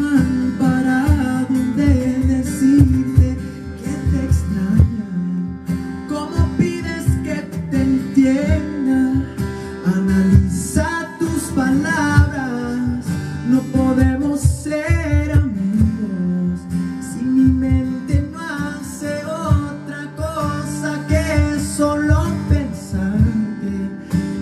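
Live acoustic guitar strumming chords under a man singing a slow romantic ballad into a microphone, with a long held note that wavers about halfway through.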